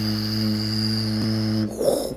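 A man's low voice holding one long, steady 'ooh' tone, which breaks off shortly before the end and is followed by a brief breathy noise.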